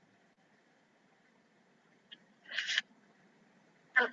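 Near silence on a video-call audio line, with a faint tick a little past halfway and, just after it, one short breathy hiss lasting about a third of a second.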